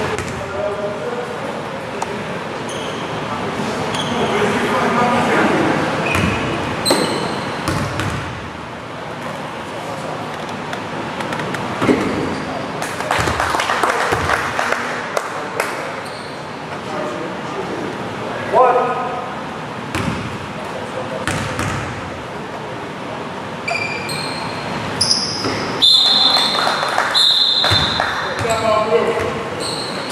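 Basketball bouncing on a hardwood gym floor, with players' and spectators' voices echoing around a large gymnasium. There are scattered sharp thuds, and short high squeaks near the end, typical of sneakers on the court.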